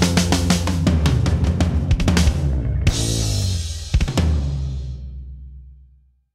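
Closing bars of a rock song: full band with drum kit playing, then a last drum hit and a held final chord that rings out and fades away at the end.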